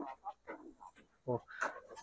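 Goats bleating faintly in their pen, two short calls about a second and a half in, with quiet between them.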